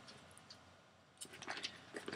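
Faint rustling of paper pages as a Bible is leafed through, starting a little over a second in after a brief quiet.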